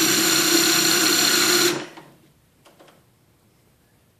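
Power drill spinning a Lee Power Quick Trim cutter to trim and chamfer a 300 Blackout brass case, running steadily at one pitch and stopping just under two seconds in.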